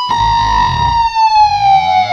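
Distorted electric guitar sounding a harmonic against a fretted note a semitone away, a harsh dissonance held and bent with the vibrato bar: the high pitch slowly sinks while lower tones rise beneath it.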